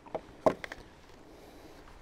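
A few light clicks and taps from handling a small cardboard box of .22 Short cartridges, over a faint steady outdoor hiss.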